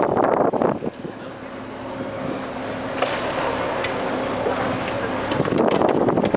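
Motorboat engine running steadily under way, with wind buffeting the microphone for the first second and again from about five and a half seconds in.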